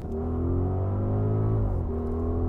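Audi RS Q8's V8 engine accelerating, heard from inside the cabin: a deep, even drone that climbs slowly in pitch, drops suddenly with an upshift near the end, then starts climbing again.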